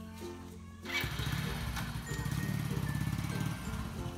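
Background music with a plucked-sounding melody. About a second in, a motorbike engine comes in underneath it, a steady low running sound.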